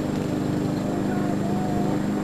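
A steady, even drone of a running engine or motor. A faint voice is heard briefly near the middle.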